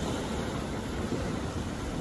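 Steady rushing background noise of an open beach, with no distinct events.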